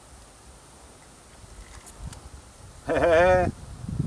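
A short, wavering vocal call lasting about half a second, about three seconds in, after a stretch of faint low background.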